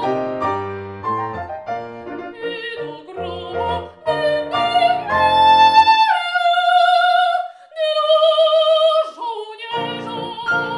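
A soprano sings an opera aria with grand piano accompaniment. About six seconds in the piano stops and she holds two long high notes with vibrato, unaccompanied. The piano comes back in near the end.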